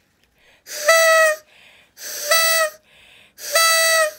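Paper party blower blown three times, each blast a steady reedy tone just under a second long that dips in pitch as it ends, with quick breaths between blasts.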